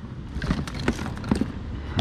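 Hands rummaging through a clear plastic storage bin full of cables: a scattered run of small knocks, clicks and rattles of plastic and cable plugs.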